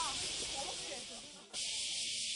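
Steady high sizzle of summer cicadas over the faint murmur of an outdoor crowd. About one and a half seconds in the sound cuts abruptly: the crowd voices drop away and the cicada sizzle is left alone.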